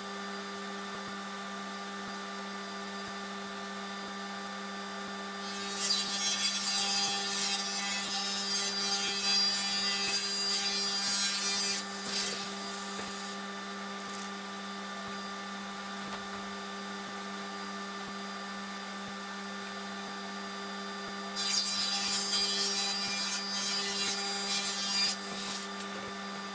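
Table saw ripping a reclaimed wood plank in two passes, each cut lasting about five seconds, over the steady hum of the running machinery.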